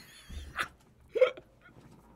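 A man laughing hard, in two short gasping bursts about half a second apart.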